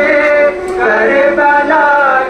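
Male voices singing a chant in long, held melodic notes, with a brief drop in loudness about half a second in.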